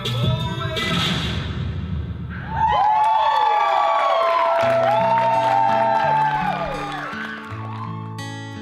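Hip hop music with a heavy bass plays and cuts off a little under three seconds in. An audience then cheers with long whoops and claps, and soft guitar music starts under it about halfway through.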